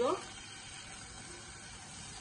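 Onion-tomato masala sizzling gently in oil in a saucepan while it is stirred, a steady soft frying hiss.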